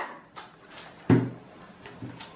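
Plastic curling ribbon being pulled off its spool: faint rustling and light clicks. A brief sound of a woman's voice about a second in.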